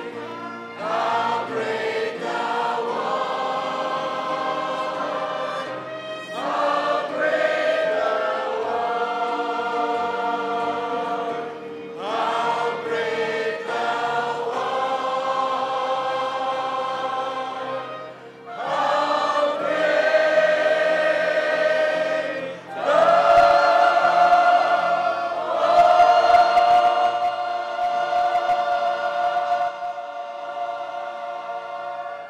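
Church choir and congregation singing a hymn together, in phrases of about five or six seconds with short breaks between them. The later phrases are louder, and the last is held long near the end.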